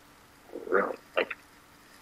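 A person's brief non-word vocal sounds: one short murmur a little after half a second in, then two quick clipped bursts just after.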